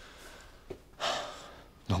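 A man takes a short, sharp audible breath about a second in, then starts speaking again near the end.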